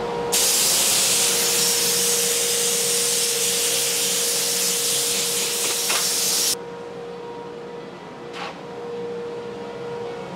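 Compressed-air blow gun hissing steadily as it blows sawdust off a freshly flattened wood slab, for about six seconds, then cutting off suddenly.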